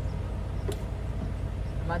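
Steady low hum of an idling diesel truck engine, with one short metallic click about two-thirds of a second in.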